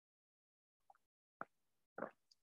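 Near silence in a pause between spoken sentences, with one faint short click about one and a half seconds in.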